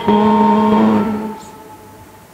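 A voice singing a hymn, holding one long note that fades out a little over a second in, followed by a quiet pause before the next line.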